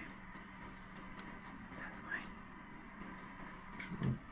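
Faint clicks of small metal hotend parts and a retaining clip being handled and fitted by hand, over a low steady hum.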